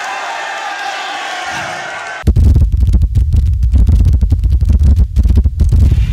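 Crowd cheering and shouting. About two seconds in, a sudden, very loud deep rumbling sound effect with a rapid crackle over it cuts in and runs on for about four seconds: the bass-heavy sting of the league's logo intro.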